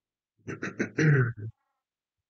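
A man clearing his throat about half a second in: a few quick short rasps, then a brief voiced 'ahem'.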